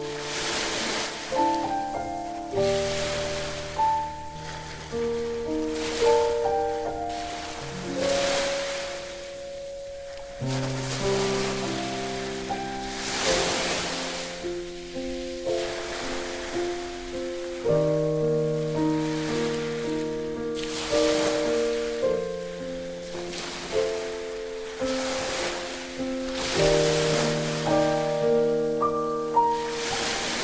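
Solo piano playing a slow, gentle melody over recorded sea waves. The surf swells and recedes every few seconds beneath the notes.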